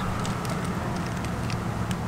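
Steady background noise, a low rumble with a light hiss, with no distinct events.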